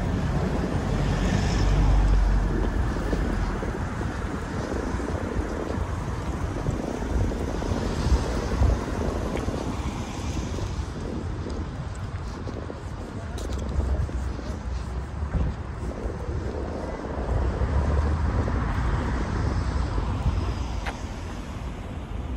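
Road traffic: cars driving past on a city street, a steady rumble that swells as vehicles go by, about two seconds in and again in the last few seconds.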